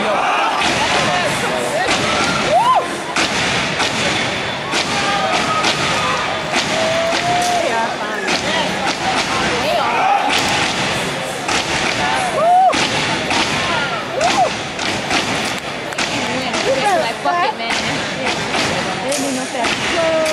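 A step team stepping: a dense, loud run of stomps on the stage floor, hand claps and body slaps. Short shouts and yells from voices sound over it.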